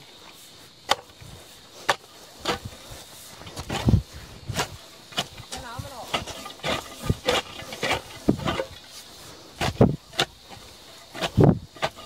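Irregular knocks and thuds, roughly one a second, some deep and heavy, as a bamboo pole is worked down into the field soil.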